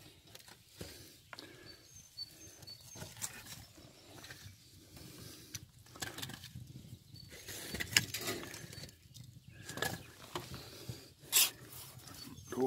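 Scattered light knocks and scrapes of firewood being handled and pushed into the firebox under a cinder-block fish smoker.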